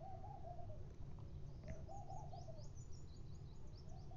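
Faint background bird calls: a low call under a second long, repeated about every two seconds, with short high chirps in the second half.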